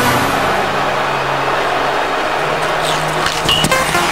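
Steady broad noise of a large crowd in an outdoor stadium, with a few light clicks near the end.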